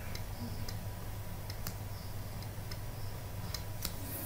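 Faint, irregular light clicks of a stylus tapping on a writing tablet as an equation is written, over a steady low electrical hum.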